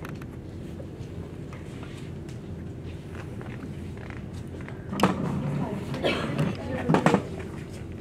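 Quiet room with a steady low hum; from about five seconds in, soft voices talk in short bursts.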